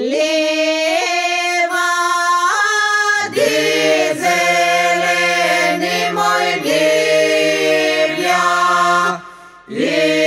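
Unaccompanied Macedonian traditional Easter song sung in parts. Women's voices sing a phrase alone, then lower men's voices join about three seconds in. The singing breaks off briefly near the end before a new phrase begins.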